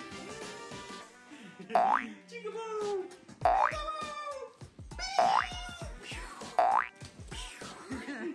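Cartoon 'boing' sound effects, four in a row about one and a half seconds apart, each a quick rising spring twang, over upbeat background music.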